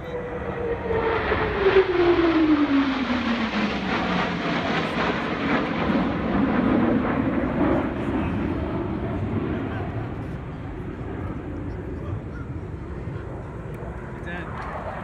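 Four Blue Angels F/A-18 Hornet jets in diamond formation flying past: a jet roar that swells to its loudest about two seconds in and then fades slowly. Through the roar runs a whine that falls steadily in pitch as they go by.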